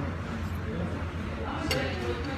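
A metal fork clinks once against a plate near the end, over a steady low room hum.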